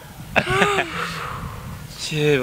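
A young woman's short, breathy squeal of delight about half a second in, wavering in pitch, trailing off into a breathy outbreath.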